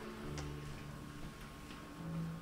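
Symphony orchestra playing very softly: a few low held notes, with a single faint click about half a second in.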